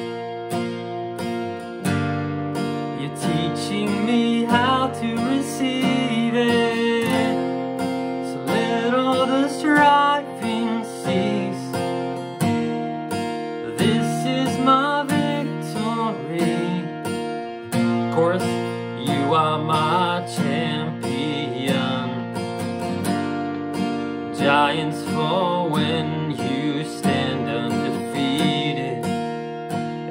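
A steel-string acoustic guitar with a capo on the third fret is strummed in a smooth down-up pattern through G-shape chords that sound in B-flat. A man's voice sings over it.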